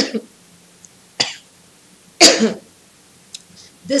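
A woman coughing three times in a bout of coughing, the loudest cough about two seconds in.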